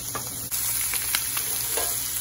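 Deboned chicken thighs sizzling as they go skin side down into a hot sauté pan; the sizzle jumps up about half a second in, with scattered pops and crackles.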